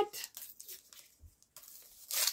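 Faint rustling and a few light clicks as the plastic sleeve and paper label of a poly stuffing tool are handled.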